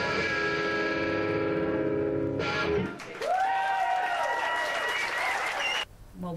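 Live distorted electric guitar: a chord rings for over two seconds, then after a brief gap held notes bend and slide before cutting off suddenly near the end.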